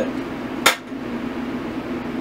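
Steady low hum of a window air conditioner, with one sharp click or clink about two-thirds of a second in.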